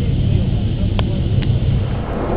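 Steady low wind rumble on the microphone of a camera carried on a moving bicycle, with a short click about a second in and a fainter one soon after.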